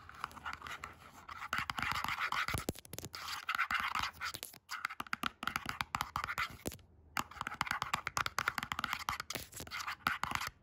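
Long acrylic fingernails scratching and tapping fast on a printed cardboard box, in quick runs a second or two long with two brief pauses.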